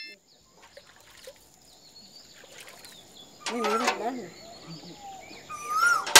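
Faint rural outdoor ambience with scattered small bird chirps over a steady high thin tone. A brief voice is heard about three and a half seconds in, and a short rising call comes near the end.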